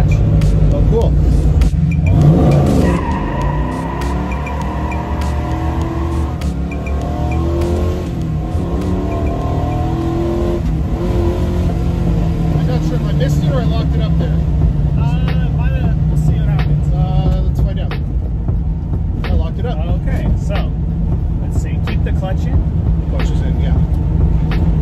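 1967 Camaro SS's 396 big-block V8 heard from inside the cabin, driven hard through the gears of its Muncie four-speed. The revs climb sharply about two seconds in, and the engine note then rises and falls with the shifts.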